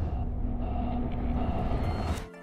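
Low cinematic rumble, the sustained tail of a deep boom hit, with faint held tones above it.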